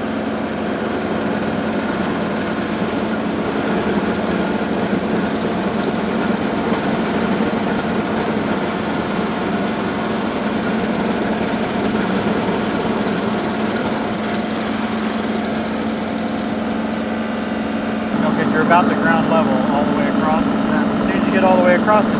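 John Deere 2038R compact tractor's three-cylinder diesel running steadily at working speed, driving a PTO-powered Baumalight 1P24 stump grinder that is cutting into a hard ash stump.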